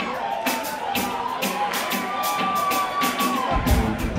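Live funk band playing, with drums and guitars under a long held high note that ends near the end, and the crowd cheering.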